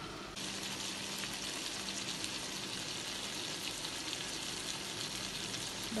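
Round eggplant and shallots frying in oil in a wok: a steady, crackling sizzle that starts abruptly just under half a second in.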